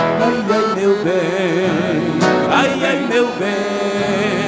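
Live gaúcho folk music with the accordion carrying a wavering melody between sung verses, and a sharp percussive hit a little past two seconds in.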